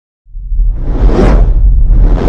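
Logo-intro sound effect: a deep, loud rumble sets in a moment after the start, with a whoosh that swells to a peak about a second in and fades away.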